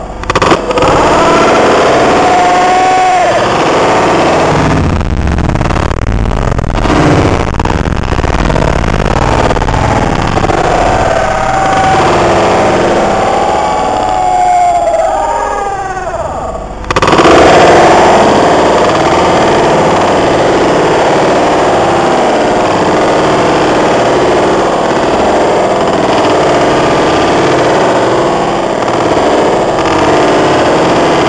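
Loud, heavily distorted battlefield sound: a dense, continuous noise with rising-and-falling wailing tones over it. Sharp cracks cluster around five to eight seconds in, and the noise jumps louder and denser at about seventeen seconds in.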